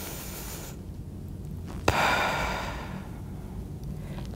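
A woman taking a deep, slow breath: the inhale ends just under a second in, then after a short pause a small click and a long, audible exhale that fades away.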